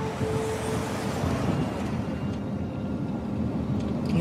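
Car driving on a city street, heard from inside the cabin: steady engine and road noise. A held music note fades out in the first second.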